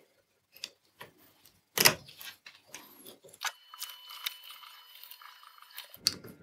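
Light clicks and clinks of a small screw and a 3D-printed plastic bearing holder being handled and fitted onto a stack of mild-steel plates, with one louder knock about two seconds in.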